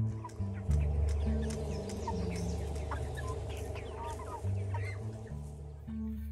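A flock of broiler chickens calling, many short calls overlapping, over a music bed with a low, stepping bass line.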